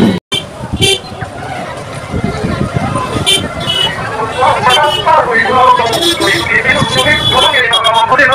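Busy street traffic: motorbike horns give a few short toots over engine noise and the chatter of people close by.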